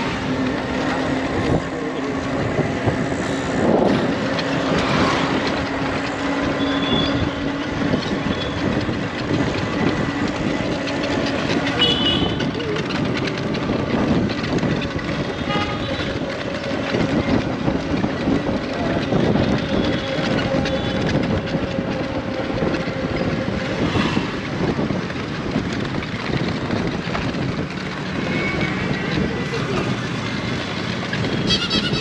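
Steady road and traffic noise heard from an open three-wheeled rickshaw riding along a city street. A held low hum runs through the first several seconds, and a higher steady tone comes in for a stretch in the middle.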